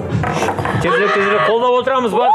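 Excited, high-pitched women's voices calling out and squealing. They rise out of background music about a second in.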